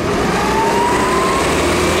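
A motor vehicle accelerating, its engine note rising for about a second over a steady low rumble.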